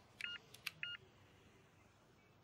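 Treadmill control-panel buttons being pressed, each press giving a short electronic beep: two beeps about half a second apart in the first second, with small clicks of the buttons around them.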